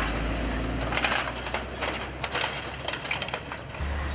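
Heavy dump truck crossing a steel-plated bridge deck: the engine runs with a low steady hum while the deck plates clatter and knock irregularly under its wheels.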